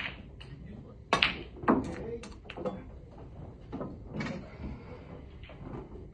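Snooker balls knocking: two sharp clicks about a second in, half a second apart, then several fainter knocks as the balls run on.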